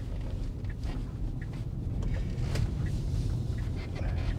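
Low steady rumble of road and tyre noise inside a Tesla's cabin as the car picks up speed through a left turn, with faint light ticks about every two-thirds of a second.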